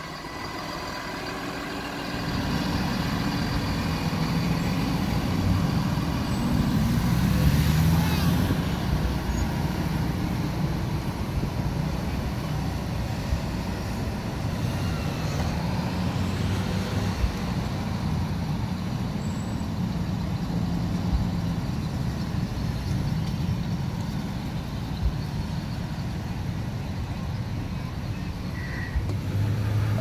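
Large motorhomes driving slowly past: a steady low engine rumble that swells to its loudest about a quarter of the way in, with a brief hiss at that peak, then carries on at a lower level.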